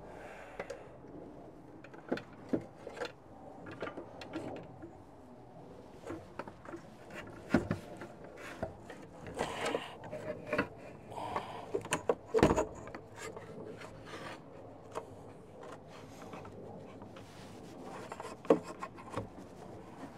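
Irregular clicks, knocks and rattles of metal parts being handled and fitted inside a Peterbilt 389 truck door as the window regulator is worked into place, with rubbing between them; the sharpest knocks come about a third of the way in, around the middle, and near the end.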